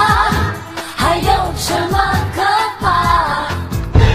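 A Chinese pop song playing, with a sung melody line over a bass-heavy backing track.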